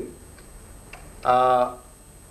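A man's voice over a microphone and PA in a pause of a sermon: one drawn-out syllable about a second and a half in, with faint ticks in the quiet gaps before it.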